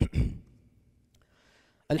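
A man's heavy sigh into a close headset microphone at the start, followed by a faint breath, then a man's voice starting to speak near the end.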